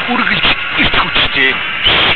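Speech only: an advertisement announcer's voice-over talking throughout.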